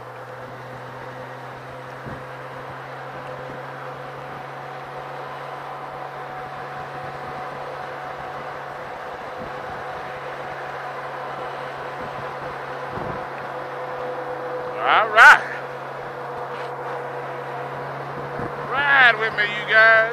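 Motorcycle cruising at highway speed: a steady low engine drone mixed with wind and road noise, gradually getting louder over the first dozen seconds or so.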